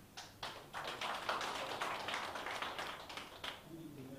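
Brief applause from a small seated audience: a few separate claps at first, then many hands clapping together, stopping about three and a half seconds in.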